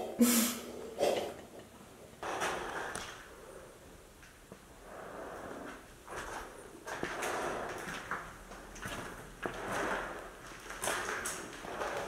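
Footsteps scuffing and crunching on a grit- and debris-covered floor, irregular, roughly one every second, with faint rustling.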